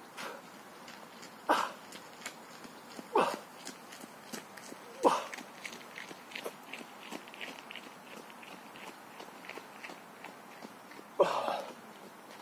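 A man's short, forceful grunting exhalations, one with each pull-up rep: three strained breaths about a second and a half to two seconds apart, then a gap, then a louder one near the end.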